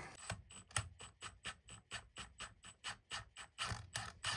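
Ratchet wrench clicking faintly and steadily, about six clicks a second, as it backs out the screw of a valve spring compressor. This slowly releases the valve spring so the retainer seats on the freshly set keepers.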